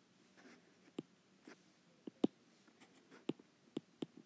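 A stylus on a pen tablet, tapping and scratching as handwriting starts, with half a dozen short, sharp clicks scattered through.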